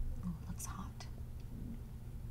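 Quiet eating sounds: a few light clicks from a wooden spoon scooping silken mapo tofu off a plate, with soft breathy mouth noise about a third of the way in.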